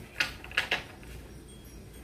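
A tarot deck being handled and shuffled in the hands: three short card snaps or taps in the first second, then only faint room hum.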